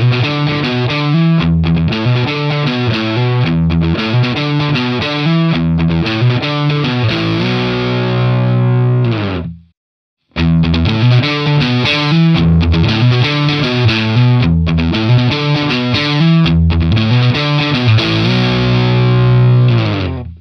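Distorted electric guitar, a Telecaster played through the Mooer GE300's PLX 100 amp model with EL34 power-tube simulation, playing the same riff twice, each time ending on a held chord, with a short break about ten seconds in. The first pass has the power-amp bias turned low. The second has it turned up, which brings out the overtones and gives more bite.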